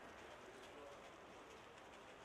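Near-silent outdoor ambience with a pigeon cooing faintly.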